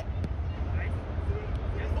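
A low steady rumble with faint, distant shouts of players. There is one light click just after the start.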